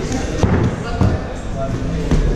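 Thuds of feet and hands landing on padded foam vaulting blocks and a padded gym floor during parkour moves, two sharp thuds about half a second and a second in.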